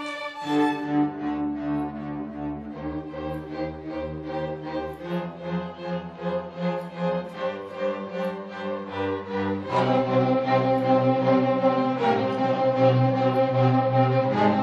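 A school string orchestra of violins, cellos and double bass playing together, with held low bass notes under quick repeated bowed notes. About ten seconds in, the whole ensemble comes in louder and fuller.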